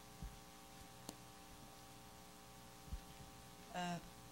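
Quiet, steady electrical hum, with a few faint low thumps and a click; a voice says "uh" right at the end.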